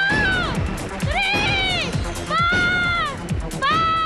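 A woman screaming with joy into a handheld microphone, four high, arching screams about a second apart, each under a second long. Upbeat music with a steady drum beat plays underneath.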